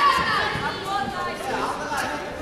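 Indistinct voices chattering in a large, echoing sports hall, loudest at the start and fading off.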